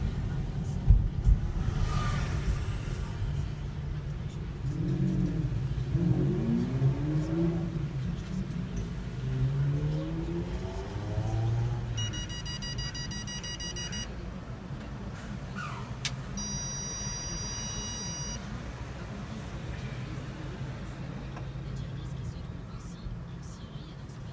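Car interior with a steady low engine and road rumble as the car rolls slowly up to a toll booth. A voice is heard briefly in the first half, then two long electronic beeps of about two seconds each, the second after a sharp click, from the toll payment machine.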